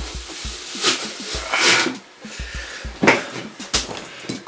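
Handheld plastic apple slicer-corer pressed down through a whole apple, its blades cutting it into wedges in several short scraping, crunching bursts, over background music.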